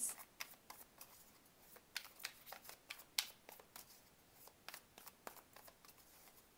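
Tarot cards being shuffled by hand: soft, irregular flicks and slaps of the cards against each other.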